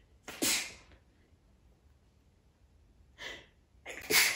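A woman sneezing into her hand: one loud sneeze about half a second in, then a quieter second sneeze a little after three seconds.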